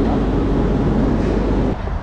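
Steady rumble and hiss of a subway train and station, muffled by the microphone pressed against clothing; it cuts off suddenly near the end.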